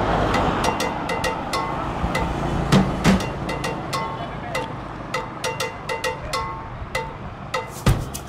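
Background music with drums and a repeating pattern of short melodic notes. A noisy rush underneath fades away over the first few seconds.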